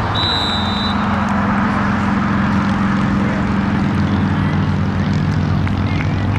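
A steady low engine drone whose pitch sinks slowly about two-thirds of the way through, under a constant wash of noise. A short referee's whistle blast sounds right at the start, as the tackle ends the play.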